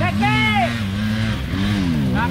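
Dirt bike engine running with its revs rising and falling unevenly while the bike is pushed and ridden up a steep hill climb. A brief shout sounds over it near the start.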